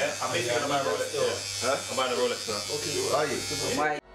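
Indistinct chatter of several men's voices in a small room, over the steady buzz of electric hair clippers. The sound cuts off suddenly at the end.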